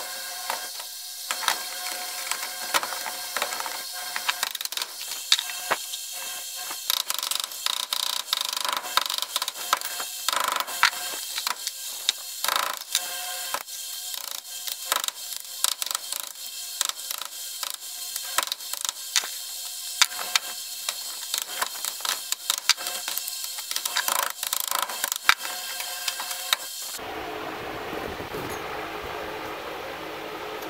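Rapid, irregular metallic clicks and knocks of a hammer and hand tools on a transformer's steel core as the copper coils and spacers are worked free. Near the end the knocking stops and a steady background noise takes over.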